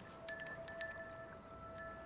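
Soft, sparse chime-like tinkling: several light struck notes that ring on over a held, bell-like tone.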